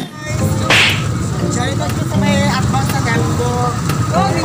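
Voices and background music over a steady low street-traffic rumble, with one short loud hiss about a second in.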